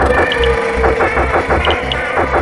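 Hard techno track: a repeating kick-drum beat under a buzzy synth line that stutters rapidly, with a held mid-range note that dips slightly in pitch.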